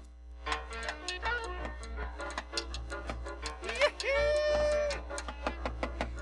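Latin dance-band music in a rumba style, with steady rhythmic percussion. About four seconds in, a single strong note scoops up and is held for about a second.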